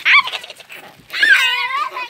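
A young child's high-pitched voice without words: a short rising squeal at the start, then a long held, slightly wavering squeal or sung note near the end.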